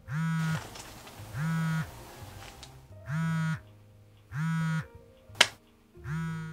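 A mobile phone buzzing on vibrate for an incoming call. There are four short, even buzzes of about half a second each, roughly a second and a half apart, then a sharp click near the end.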